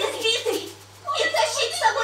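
Voices talking, with a short pause about a second in, over a steady low hum.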